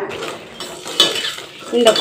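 Metal ladle stirring cut ivy gourd pieces in a stainless steel kadai, scraping against the pan with one sharp clink about a second in.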